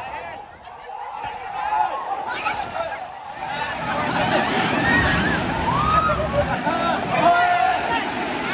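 Wave-pool water sloshing and washing up over the shallow tiled edge, growing louder about halfway through, under a crowd's overlapping shouts and chatter.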